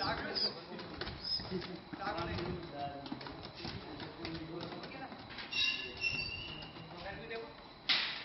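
Busy outdoor background of indistinct voices, with a few short high chirping calls about five and a half to six and a half seconds in.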